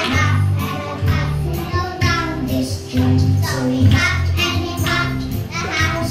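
A group of young children singing together along with a recorded music backing track that has a steady bass line.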